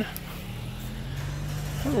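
A car driving by, its engine a steady low hum that grows gradually louder.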